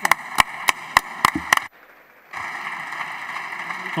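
Applause in a parliamentary chamber: about six sharp, separate hand claps close by, roughly three a second, then the sound cuts out briefly, then steady applause from many hands across the benches.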